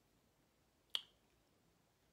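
A single finger snap about a second in; otherwise near silence.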